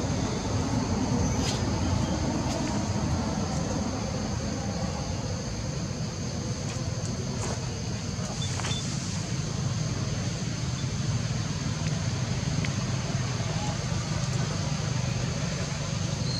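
Steady outdoor background noise: a continuous low rumble with a thin, steady high-pitched drone over it and a few faint clicks.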